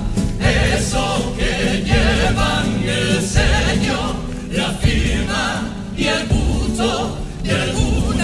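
A Cádiz carnival comparsa, a male choir, singing in several voices with wavering vibrato over guitar accompaniment and occasional drum strokes.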